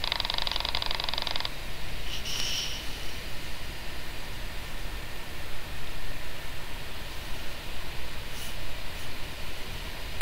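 Steady background noise with no distinct events, after a finely pulsed buzzing sound that stops about one and a half seconds in. A short hiss follows about two seconds in.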